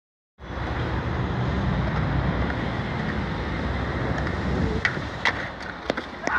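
Steady outdoor rumble of wind buffeting the microphone, heaviest in the low end, which eases off near the end. A few sharp clicks follow in the last second.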